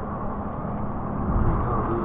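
Steady low drone of a speedboat's engine, heard under wind and water noise.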